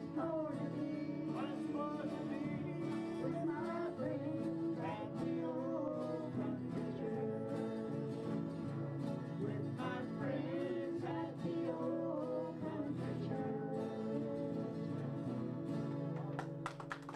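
Several acoustic guitars strumming a country song together, with voices singing along.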